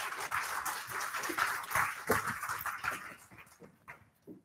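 Audience applauding, a dense patter of clapping that thins and dies away near the end.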